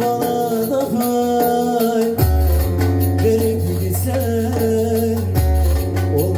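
Instrumental passage of live Turkish folk music: a long-necked plucked lute carries the melody over a deep sustained bass, with a jingling hand drum keeping time.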